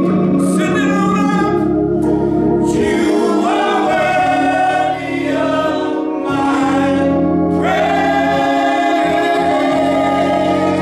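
Gospel choir singing long held notes over a steady organ accompaniment, with a brief break in the voices about halfway through.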